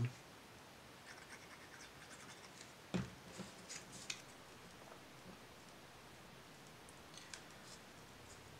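Quiet handling of small cardstock hearts and foam tape: a light tap about three seconds in, then a few faint rustles and clicks as the pieces are picked up and pressed into place.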